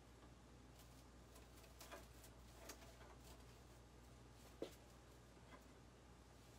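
Near silence: a low steady room hum with a few faint rustles and small ticks from hands working in a grapevine wreath, the sharpest about two thirds of the way through.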